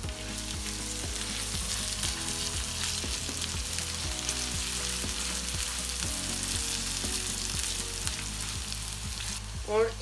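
Chopped onion, garlic and ginger sizzling steadily in hot oil on a large iron tawa, stirred with a silicone spatula.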